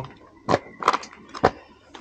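Three short knocks about half a second apart, over faint background noise.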